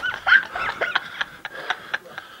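Short high-pitched whines and yips, like a dog's, mixed with light clicks.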